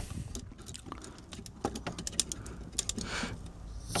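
Light, irregular plastic clicks and taps from hands working a Transformers Cybertron Soundwave action figure as its Cyber Key is taken out.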